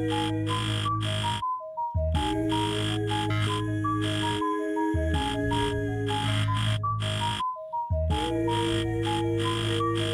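A live loopstation beatbox performance: layered vocal loops with a steady bass, held mid notes and a short stepping high melody repeating over and over. The whole loop cuts out for about half a second twice, roughly six seconds apart, then comes straight back in.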